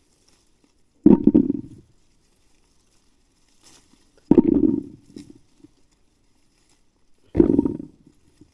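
Handfuls of freshly picked currants dropped into a bucket, heard from inside the bucket: three short thudding patters, about three seconds apart.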